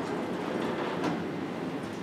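Sliding whiteboard panels running along their vertical tracks as they are pushed up and down: a steady rolling rumble, with a faint click about a second in.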